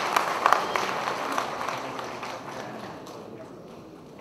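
Audience applauding, loudest at first and dying away over the few seconds.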